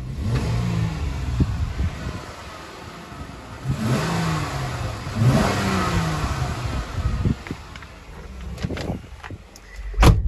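A 2016 Jeep Wrangler's 3.6-litre V6 is blipped from idle, heard from outside by the hood. It revs up and drops back three times, the middle two the loudest, then settles to a quieter idle. The throttle response is right on the money and the engine good to go.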